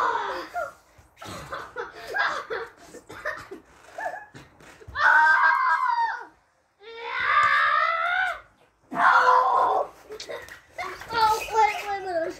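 Children's voices screaming and yelling in a string of loud cries, the longest three near the middle, with shorter shouts between them.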